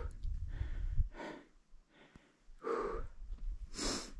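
A hiker breathing hard from the climb, three heavy breaths about a second and a half apart, with low wind rumble on the microphone.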